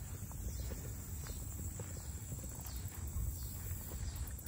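Footsteps walking along a dirt and grass trail: soft, evenly paced steps.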